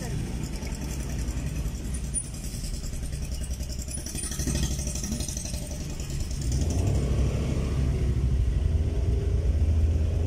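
Engine and road noise from inside a moving car, a steady low rumble that grows louder about six and a half seconds in.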